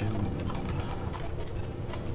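Computer keyboard typing: scattered, irregular key clicks over a steady low background hum.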